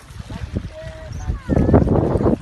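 People's voices, louder in the second half, over a steady low rumble.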